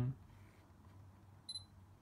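Sony A7R II's short, high focus-confirmation beep about one and a half seconds in, as the adapted Sony 70-400mm SSM lens locks focus after being driven in from infinity to a subject a few metres away. Under it, only a faint low hum.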